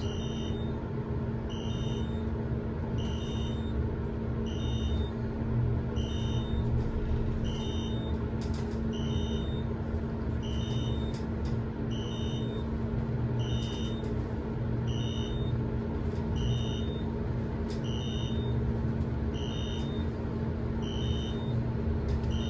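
Elevator car climbing steadily, with a low hum and rumble of the ride and a short electronic beep repeating about every second and a bit. The beeps come at about the rate the car passes floors, so they are the floor-passing signal.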